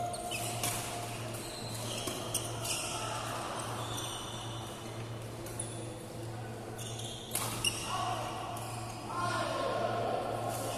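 Badminton rally in a hall: sharp racket strikes on the shuttlecock at irregular intervals, with short squeaks of shoes on the court mat over a steady low hum.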